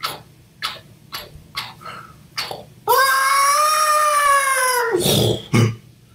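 A few short taps about twice a second. About three seconds in they give way to a loud, high-pitched, drawn-out scream lasting about two seconds, rising and then slowly falling in pitch. A short low grunt comes just after it.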